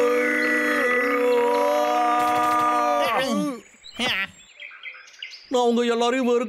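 A cartoon bear's voice holding one long wailing note for about three seconds, then sliding down and breaking off. After a short lull, a shaky, quavering voice starts near the end.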